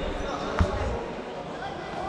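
A futsal ball hit once on the court about half a second in, a single sharp thud in a large sports hall, over players' voices.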